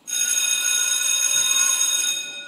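School bell ringing: a loud, steady electric ring that starts abruptly and fades out right at the end, used as a stage sound effect to signal the start of the school day.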